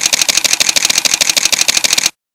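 Rapid, evenly spaced burst of camera-shutter clicks, a motor-drive sound effect in a news channel's intro.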